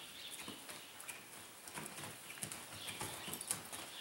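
A palomino gelding's hooves striking and scuffing the soft dirt of an arena floor as it turns under saddle: an irregular run of footfalls, the sharpest about three and a half seconds in.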